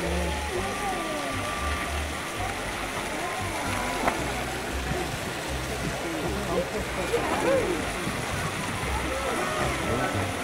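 Indistinct chatter of many people, with water running and splashing steadily into a pool.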